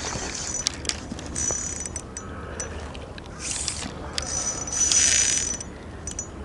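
Spinning reel mechanism running in three short bursts, the last and loudest about five seconds in, with a few small clicks between.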